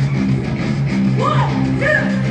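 Live rock band playing a song, led by a repeating riff of low guitar notes, heard from within the audience. Higher gliding sounds join about a second in.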